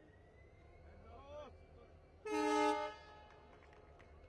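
A train horn sounds once, a steady tone lasting under a second, as the train is flagged off: the locomotive's departure signal.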